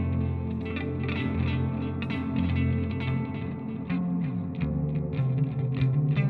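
Fender electric guitar played with a clean amp tone, picked notes and chords ringing on, with one note sliding down about four seconds in.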